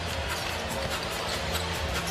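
Arena music playing steady low tones over a crowd noise haze, with a basketball being dribbled on the hardwood court.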